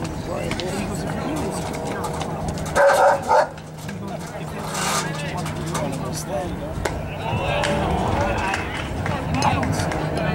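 Low, unintelligible chatter of spectators at an outdoor baseball game. About three seconds in come two loud, short bark-like calls half a second apart.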